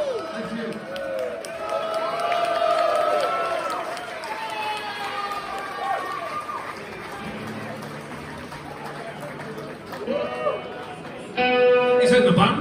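Concert audience between songs: many voices shouting and singing out at once, thinning and fading over several seconds. Near the end a sustained amplified note starts.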